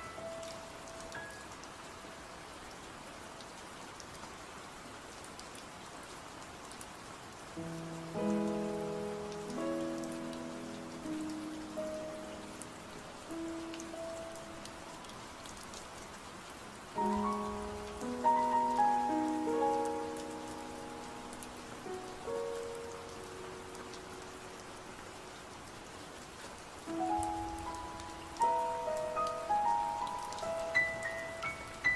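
Steady rain hiss with soft, slow instrumental sleep music: gentle held notes that ring and fade come in about a quarter of the way in, again just after the middle, and near the end, with only the rain between them.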